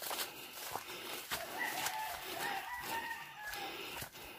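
A rooster crowing once, a long arching call that starts about a second in and lasts about two seconds.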